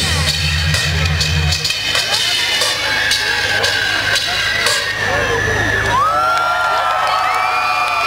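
Dance music with a heavy bass beat cuts out about two seconds in. The crowd then cheers, with high whoops and screams rising from about six seconds in, marking the end of the dance routine.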